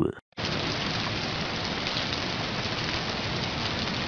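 Steady rain, an even hiss that starts a moment after a voice cuts off and holds at one level.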